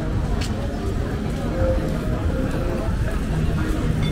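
Busy street ambience: many people talking at once in the background over a steady low rumble.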